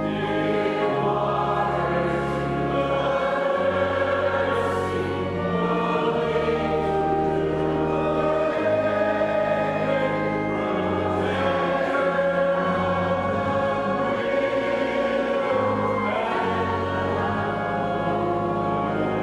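Pipe organ playing a slow hymn: full chords held steady over a pedal bass that steps from note to note every second or two.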